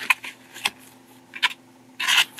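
A clear plastic packaging case and its paper inserts being opened and handled during unboxing: a few sharp plastic clicks with soft rustling in between.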